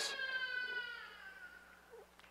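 A drawn-out wailing human cry, dramatising a man crying out as he is arrested. It holds one pitch that sinks slightly and fades away within about a second and a half.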